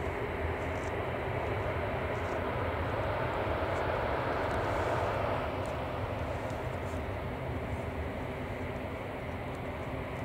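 Jet engines of taxiing airliners running at low taxi power: a steady rumble and hum that builds slightly for the first five seconds, then eases a little.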